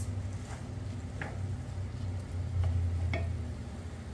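A wooden spatula stirring diced tomatoes and onions in a frying pan: a few soft, separate scrapes and taps against the pan over a steady low hum.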